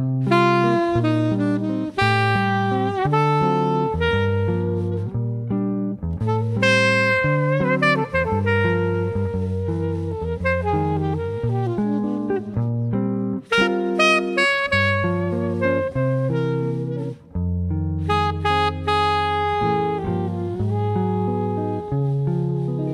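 Recorded jazz: electric guitar and alto saxophone playing a tune together, the saxophone carrying the melody over the guitar's lower notes.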